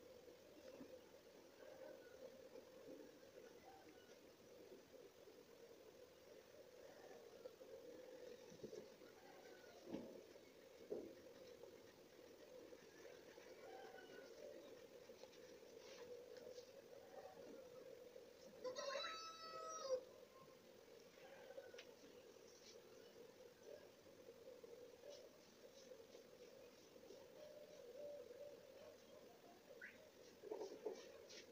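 Near silence: a faint steady hum with a few faint soft knocks. About two-thirds of the way through comes one brief high-pitched call of unclear source, lasting about a second and a half.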